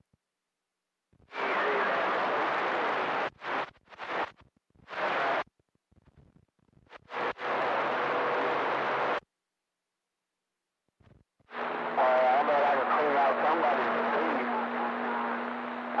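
CB radio receiver on channel 28 breaking squelch on weak, noisy skip transmissions: several bursts of static, each cut off abruptly when the squelch closes. The longest burst, from about two thirds of the way in, carries a steady low hum and a warbling, unreadable voice under the noise.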